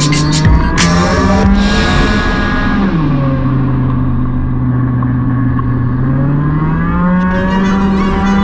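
50cc Peugeot Speedfight scooter engine heard from on board at speed. Its pitch drops about three seconds in as the throttle closes, holds steady, then rises again from about six seconds as it accelerates.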